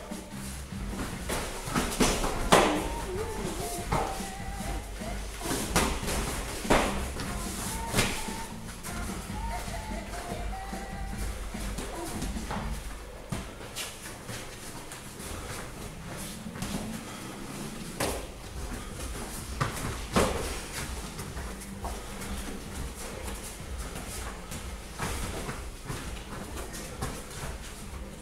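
Sharp slaps of gloved punches and kicks landing during a light-contact kickboxing bout: a cluster in the first eight seconds, then a few more later. They sit over steady background music.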